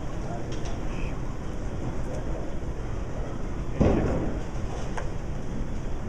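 Bowling alley: a steady low rumble of a bowling ball rolling down the lane over the alley's machine noise, with a sudden louder burst about four seconds in.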